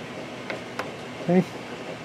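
Two faint clicks about a third of a second apart over a steady hiss of background noise.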